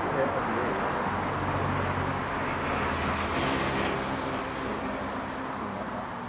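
Steady vehicle rumble with a low engine hum.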